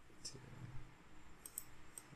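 A few faint clicks from a computer mouse and keyboard as text in a spreadsheet cell is edited to correct a typo.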